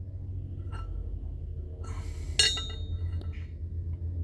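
A single sharp metallic clink with a short ring about two and a half seconds in, from a steel exhaust valve being handled over an aluminium cylinder head. A few faint ticks come before it, and a steady low hum runs underneath.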